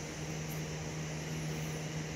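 A steady low hum with an even hiss behind it, an unchanging machine-like background drone.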